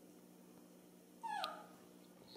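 Baby macaque giving one short whimpering cry that falls in pitch, about a second in, the cry it makes when hungry for milk.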